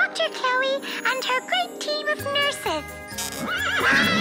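Cartoon horse neighing, voiced for a wooden toy rocking horse, in quick wavering calls with a falling whinny near the end. Background music with a bass line comes in about two seconds in.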